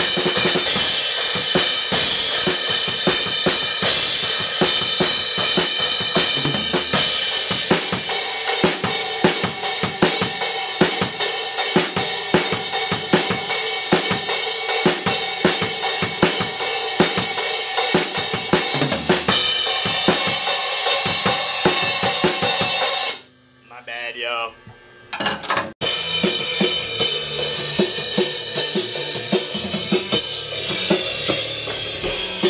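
Acoustic drum kit played hard: a driving beat of kick and snare strokes under constantly ringing crash and ride cymbals and hi-hat. The drumming drops out briefly about three quarters of the way through, then comes back.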